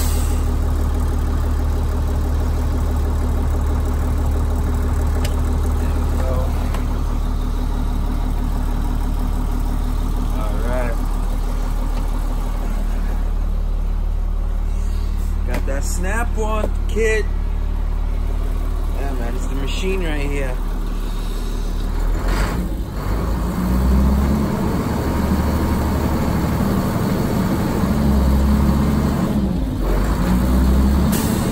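Diesel engine of a school bus idling with a steady low hum. About two-thirds of the way through, the sound turns uneven, with a knock and irregular low swells.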